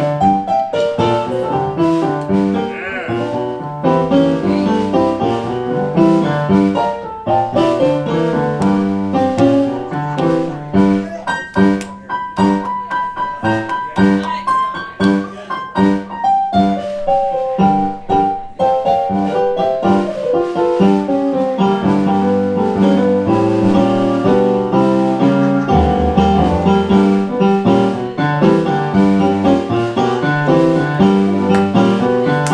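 A live band playing a New Orleans-style tune, led by keyboard over drums, with a bass line coming in more strongly about three-quarters of the way through.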